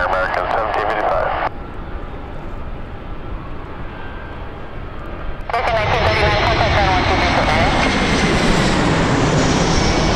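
American Airlines Airbus A321 jet airliner on final approach, flying low overhead. Its engine noise comes in suddenly about halfway through, loud and steady, with a high whine over it.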